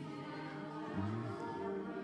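Slow worship music of sustained, held chords with soft singing voices over it.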